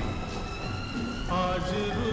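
Rain-sound ambience layered over a slow lofi music backing of held notes, with no singing; the notes change about two-thirds of the way through.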